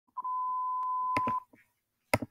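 Dispatch radio alert tone: one steady beep, a little over a second long, heard before a call goes out. Two sharp clicks come near its end, just before it cuts off.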